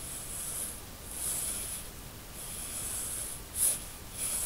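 Graphite pencil scratching across drawing paper in about four shading strokes. A short, louder rush comes just before the end.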